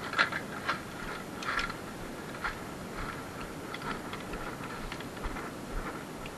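Irregular light plastic clicks and taps of Nerf blasters, magazines and darts being handled.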